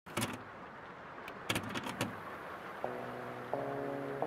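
A few short clicks and rustles in the first two seconds, then background music begins about three seconds in with struck, sustained keyboard-like chords, a new chord coming in about half a second later.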